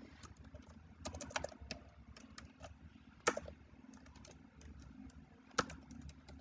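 Computer keyboard typing: scattered faint keystrokes, with two louder clicks about three seconds in and near the end.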